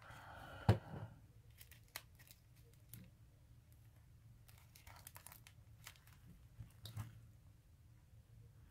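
Faint rustling and scattered light clicks of a paper flower and card being handled as the flower is pushed into a flower cluster and pressed into place, with one sharper click about a second in.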